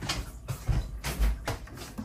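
Irregular plastic knocks and thumps as the dirty-water tank of a Bissell carpet washer is handled and brought to a steel sink, with two heavier thuds about a second apart.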